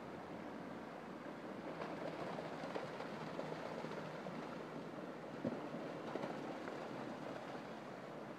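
River water rushing over rocks in a small cascade, a steady hiss, with one brief sharp sound about five and a half seconds in.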